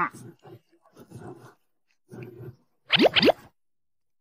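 Cartoon-style comedy sound effects: a few short dull sounds about once a second, then two quick upward-sliding whoops in a row about three seconds in, the loudest part.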